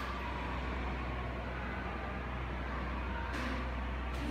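Steady low hum with an even background noise, like traffic or a fan heard in a room, and a brief soft noise a little over three seconds in.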